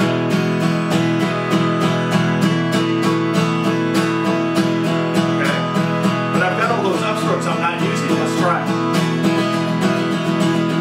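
Acoustic guitar, a 1924 Martin 0-28 parlor guitar, strummed on one held chord in steady eighth notes with all downstrokes, about four strokes a second.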